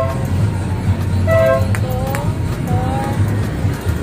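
Roadside traffic rumbling steadily, with a vehicle horn giving two short toots, one at the start and one about a second and a half in.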